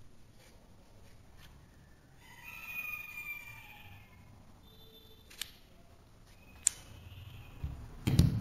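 Wooden pieces of a heart-shaped interlocking burr puzzle handled and slid into place, with two sharp wooden clicks a little past the middle, the second louder. Earlier, a faint drawn-out pitched sound, falling slightly, lasts about a second.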